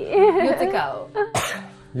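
A person's voice in a drawn-out, wavering exclamation, then a single sharp cough about a second and a half in.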